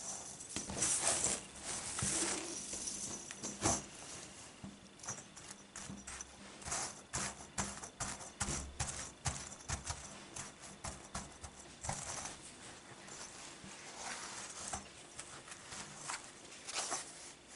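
Chain mail rings clinking and jingling as a mail panel is handled, pressed flat and lifted, a dense run of small irregular metallic clicks and rustles.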